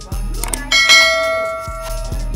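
A bright bell chime sound effect rings out a little under a second in and fades away over about a second. It plays over background music with a steady bass beat.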